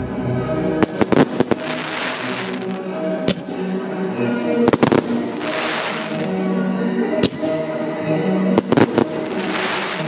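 Aerial fireworks bursting with sharp bangs, some in quick clusters. Three times a burst is followed by a second or so of dense crackling from glittering stars. Orchestral classical music plays throughout.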